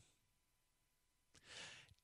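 Near silence, then a faint intake of breath by a man about a second and a half in, just before he speaks again.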